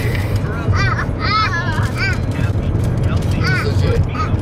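Steady low road and engine rumble heard inside a moving car's cabin, with a man's voice in short bursts over it.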